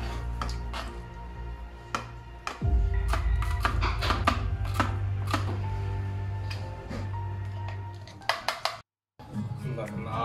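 Background music with sustained tones, a steady bass and a regular beat; it cuts out briefly about nine seconds in.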